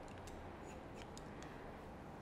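Barber's hair-cutting shears snipping through sections of wet hair: about half a dozen faint, quick snips.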